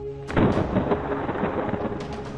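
Dark background music with steady held tones. About a third of a second in, a loud crashing noise like a thunder or boom effect comes in and fades out over the next second or so.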